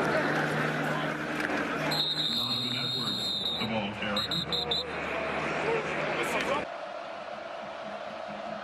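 Stadium crowd noise with a shrill whistle: one long blast about two seconds in, then four quick short blasts at the same pitch. The crowd sound cuts off abruptly near the end.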